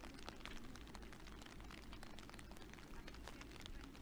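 Faint, steady patter of light rain, a fine crackle of many tiny ticks at a low level.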